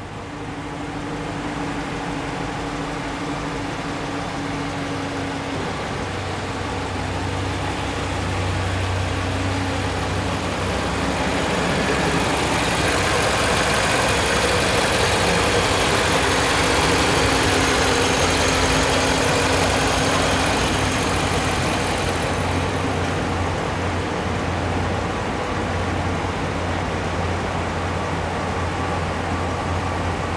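2014 RAM 1500 pickup engine idling steadily. It gets louder and hissier for about ten seconds in the middle, heard up close at the open engine bay.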